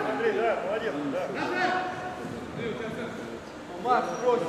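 Men's voices calling and talking during indoor futsal play.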